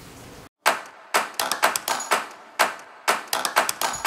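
A quick, irregular run of sharp clicks or claps, starting just after a brief moment of dead silence about half a second in.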